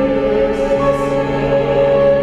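Chamber ensemble of strings and voices holding a slow, sustained chord, the top note wavering with vibrato. A new low note enters about a second in.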